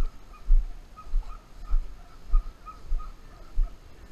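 Walking footsteps through tall grass, picked up as a low thump on each step, about one every 0.6 s. A faint high chirping note repeats in the background.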